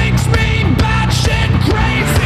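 Live rock band playing loudly: electric guitar, keyboard and drums, with sharp drum hits over a heavy, steady low end.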